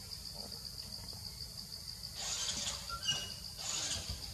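Insects trilling steadily in a rapid high pulse, with leaves and branches rustling from about halfway in as the monkeys climb, and a brief high chirp near the end.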